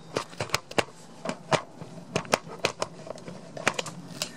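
Handling noise as the camera is moved down and set in place over a table: a scatter of irregular light clicks and taps.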